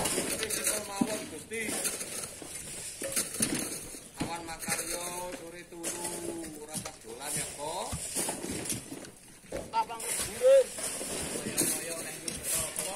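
Indistinct voices talking and calling, with a few short knocks in between.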